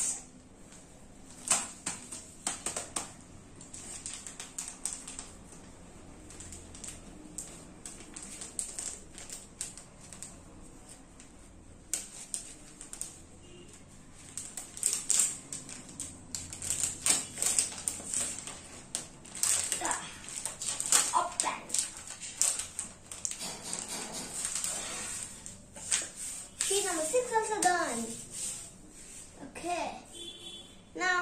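Clear plastic packaging crinkling and rustling in irregular sharp crackles as a card kit sheet is pulled out of its plastic sleeve and handled. The crackling is busiest in the second half, and a child's voice is heard briefly near the end.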